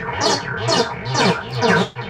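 Synthesizer notes echoing through a 1982 Powertran DIY digital delay line, repeating about twice a second with wobbling, smeared pitch. The long delay time reads RAM chips that haven't been recorded on yet, so the repeats come out as garble.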